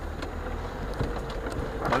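Lada 4x4 Urban's 1.7-litre four-cylinder engine running at low revs as the car creeps slowly over rough ground, heard from inside the cabin as a steady low hum, with a small knock about a second in.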